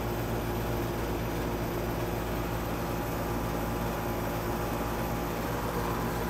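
Steady mechanical hum: several constant low tones over an even noise, with no change in level.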